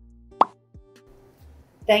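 A single short plop sound effect, a quick swoop in pitch, about half a second in, over a low held tone that fades within the first second. Speech begins right at the end.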